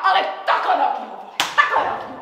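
Angry shouting, then a single sharp slap about one and a half seconds in, a blow struck during a fight.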